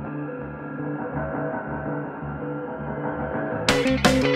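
Soundtrack music, dark and muffled, with a pulsing low beat under held tones. Near the end it cuts abruptly into a louder, brighter, guitar-led section.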